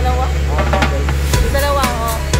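Upbeat background music with a steady drum beat, over the low steady drone of a motorboat engine.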